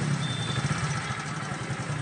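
Hero Splendor motorcycle's single-cylinder four-stroke engine idling steadily.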